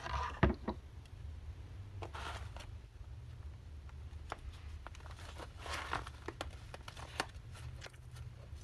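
Hands handling paper and tissue on a tabletop: soft rustling and scraping, with a knock about half a second in and a few light taps later. A steady low hum runs underneath.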